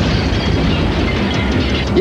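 Loud, steady rumbling noise with a clatter through it.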